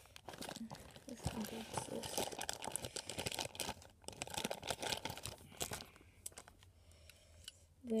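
Thin clear plastic bag crinkling and rustling as a brass HO-scale model tender is unwrapped by hand, a dense, irregular crackle that eases off about six seconds in.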